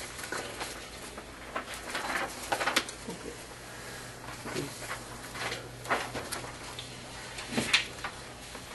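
Scattered rustling of paper sheets and light taps of pens and hands on a table, irregular and brief, over a steady low hum of the room.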